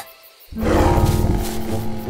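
A creature's roar sound effect breaks in suddenly and loudly about half a second in and holds on, over background music.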